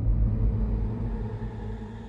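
Logo sting from a channel outro: the tail of a deep synthesized boom, fading steadily, with a held, ringing synth tone swelling over it.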